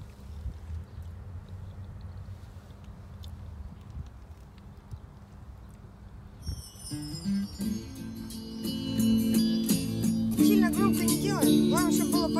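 Music from a phone played through a Lada Priora's car stereo, switched on to test the newly rewired audio system. It starts about halfway through, grows louder, and a singing voice comes in near the end. Before it there is only low background rumble and a few faint clicks.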